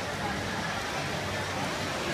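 Steady, even wash of indoor swimming-pool noise during a race: swimmers' splashing and the hall's crowd blended into a hiss.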